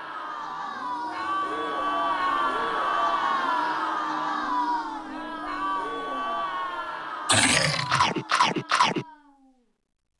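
A group of children's voices calling out together, many overlapping voices rising and falling in pitch. About seven seconds in come several loud, short bursts, then the sound stops about nine seconds in.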